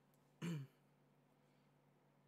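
A man clears his throat once, briefly, about half a second in; the rest is near silence.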